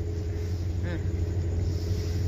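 A steady low engine hum running without change.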